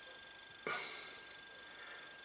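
A single short breath out, starting suddenly and fading within about half a second, over quiet room tone.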